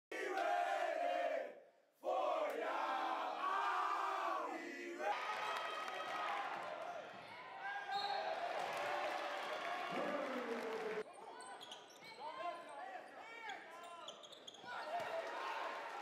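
A basketball team shouting together in a huddle, with a short break just before two seconds. Then game sounds in a gym: crowd noise, sneakers squeaking on the hardwood court and a ball bouncing, quieter over the last five seconds.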